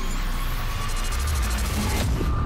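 Cinematic logo-intro music and sound design: a deep bass rumble under a dense, hissing swell, with a faint steady tone held through it.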